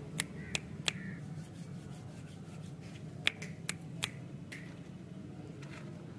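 Sharp finger snaps: three in the first second, then four more between about three and four and a half seconds in, over a low steady background hum.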